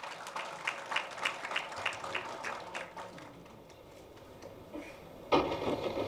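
Light applause from a small audience, the separate handclaps distinct and coming a few per second, thinning out and dying away about three seconds in. Near the end there is a brief, louder muffled noise.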